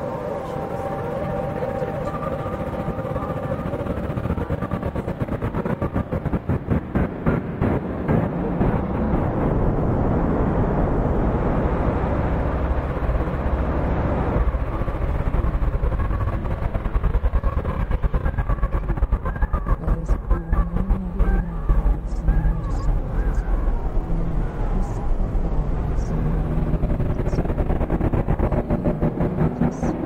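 A car driving through a wildfire: a dense, steady rumble of engine, road and fire noise, with stretches of rapid fluttering pulses.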